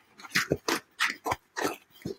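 Slit foam pool noodle being pushed onto the top edge of a poster: a series of short, irregular rubbing noises of foam on paper.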